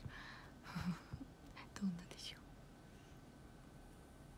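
A young woman's soft, breathy laugh with a few short voiced breaths in the first two seconds, then quiet room tone.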